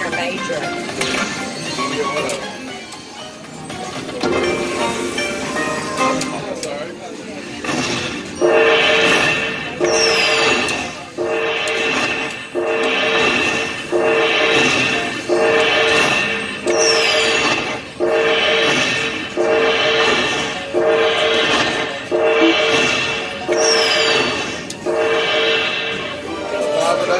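Dragon Link slot machine playing its win-tally music while the bonus coins are counted into the winner meter. From about eight seconds in, the same chiming phrase repeats about every second and a half.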